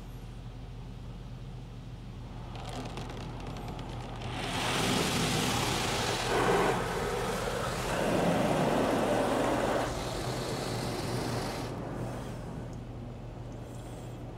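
Automatic soft-touch car wash heard from inside the car: water spray and cloth brushes rushing against the car swell up a few seconds in, are loudest in the middle and ease off near the end, over a steady low hum.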